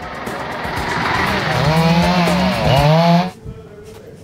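Chainsaw running at high revs while cutting trees, its pitch dipping and rising twice before it cuts off abruptly a little after three seconds in.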